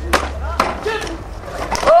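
A staged fight breaking out at a table with wicker chairs: a sharp knock just after the start, a few lighter knocks and scuffling, then a man's loud shout near the end.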